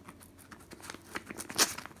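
A small knife slitting open a paper envelope: a run of short ripping strokes through the paper that grow louder as the blade moves along, the loudest about one and a half seconds in.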